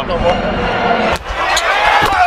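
Basketball arena sound: voices of players and crowd over court noise, with one sharp knock a little past halfway.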